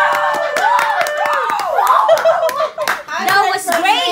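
A small group of people clapping by hand, with voices calling out over the claps. A held sung or called note runs through the first second and a half.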